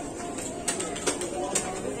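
Shop background of faint, indistinct voices, with several light clicks and taps as a small plastic candy jar is picked off a low shelf and handled.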